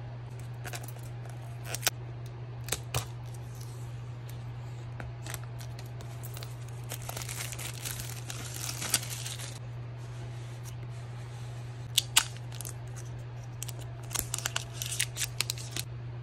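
Hands unboxing an Apple Pencil and iPad mini: scattered clicks and taps of cardboard packaging, with a couple of seconds of paper and plastic rustling about seven seconds in as the long pencil box is opened, and a quick run of light clicks near the end, over a steady low hum.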